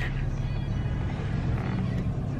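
Steady low hum of a car's engine and road noise heard inside the cabin, with music playing along.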